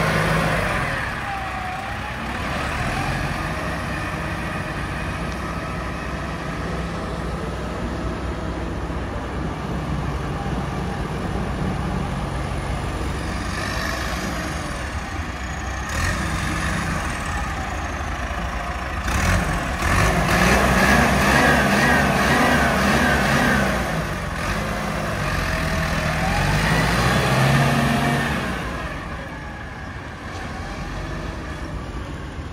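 Ford 7740 tractor's diesel engine running as the tractor drives, revving up and down several times in the second half, when it is loudest.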